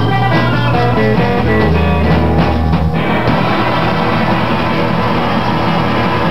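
Instrumental rock played live on electric guitar, bass and drums. The picked guitar line and drum hits stop about three seconds in, leaving the final chord and a low bass note ringing out.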